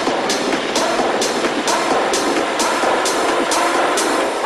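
Tech-house DJ mix with the bass dropped out: a hi-hat ticks about twice a second over mid-range synth chords.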